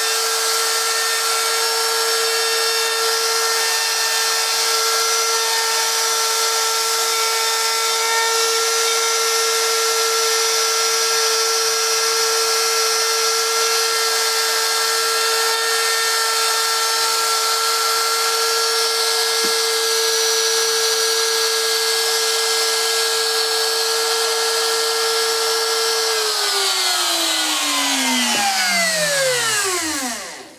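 Router on a homemade pantograph running at a steady high-pitched whine while making a test cut in wood. About 26 seconds in it is switched off, and the whine falls in pitch as the motor winds down.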